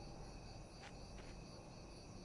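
Faint, steady chirring of crickets in a night-time ambience, with a couple of faint soft clicks around the middle.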